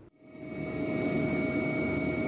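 Helicopter noise as heard aboard: a steady rotor and engine rumble with a few high, steady whining tones over it. It fades in over the first half second.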